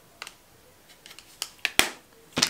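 A few short, sharp clicks and taps from a small makeup package being handled and set down. The loudest click comes near the end.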